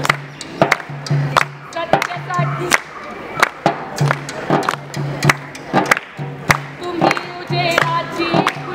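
A dafli, a hand-held frame drum, is struck by hand in a steady, brisk rhythm, about two strokes a second, with handclaps among the beats. Group singing grows louder near the end.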